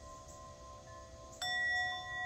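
Singing bowl struck once with a mallet about one and a half seconds in, then ringing on with several steady overtones. Before the strike, the faint ringing of an earlier strike still hangs on.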